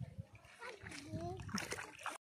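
Light splashes of a child's feet kicking in shallow lake water, a few short splashes, with a faint voice in the middle.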